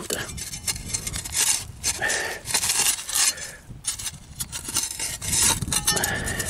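Metal digging spade chopping and scraping into dry, stony soil, an irregular run of scrapes and strikes; the ground here digs a bit softer.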